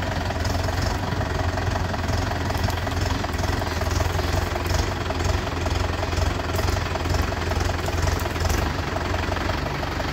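Mahindra Yuvo 585 tractor's four-cylinder diesel engine running steadily with a knocking diesel clatter while its hydraulics hold a tipper trolley raised to unload.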